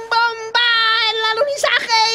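A high-pitched cartoon character's voice holding one long, steady sung note for over a second, then breaking into short syllables near the end.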